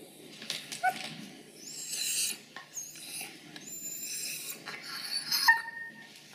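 A dog making several short, high-pitched whines, the loudest about five and a half seconds in.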